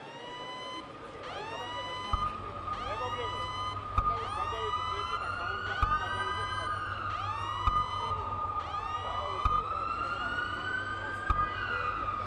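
Emergency vehicle sirens sounding together: one sweeps up and down about once a second, and another wails slowly up and down every few seconds.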